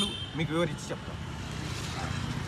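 A steady low hum of a motor vehicle engine idling, with outdoor street noise, after a brief spoken syllable about half a second in.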